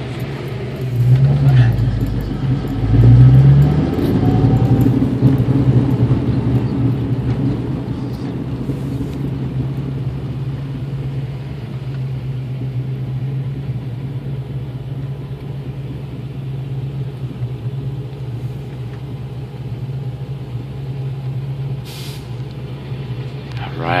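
Car engine and road noise heard inside the cabin while driving slowly, a steady low drone, louder for the first few seconds.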